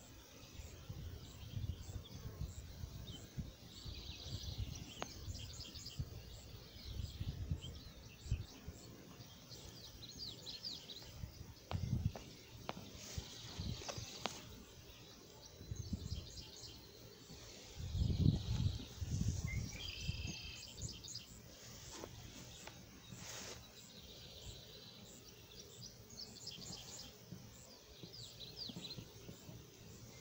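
Outdoor ambience: birds chirping now and then, over irregular low rumbles on the microphone that are loudest a little past the middle.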